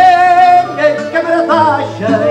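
Live fado: a male singer holds a long note with vibrato that ends about half a second in, and the Portuguese guitar and the viola (classical guitar) play on after it.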